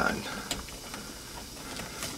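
Alligator clip being clipped onto a fuse terminal on an air-conditioner control board, attaching a short-finder lead across the blown 24-volt fuse's socket: one small sharp click about half a second in, with faint handling noise of fingers among the wires.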